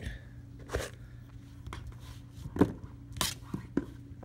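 Kitchen knife cutting pineapple on a plastic cutting board: a handful of separate knocks and scrapes, the loudest about two and a half and three and a quarter seconds in, with a quick run of smaller taps near the end.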